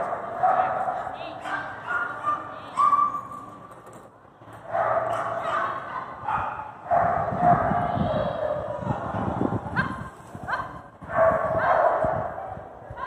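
Border collie barking and yipping in irregular bursts as it runs an agility course, with several sharp rising yips near the end.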